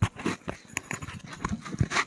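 A run of irregular knocks and clicks, the loudest at the start and just before the end: handling and movement noise from someone moving right beside the camera's microphone.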